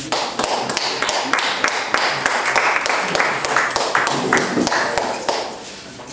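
Irregular sharp taps, several a second, over a faint background murmur.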